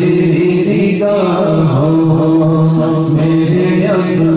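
A man's voice singing a devotional naat unaccompanied into a microphone, drawing out long held notes that bend slowly in pitch.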